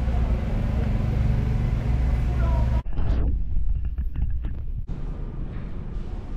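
Low, steady rumble of an idling vehicle engine, which cuts off abruptly about three seconds in. After the cut comes quieter street background with faint voices.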